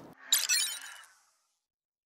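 A brief, mostly high-pitched transition sound effect of the shattering kind, starting about a third of a second in and fading out within about a second.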